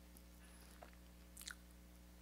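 Near silence: room tone with a low steady hum and a couple of faint small clicks.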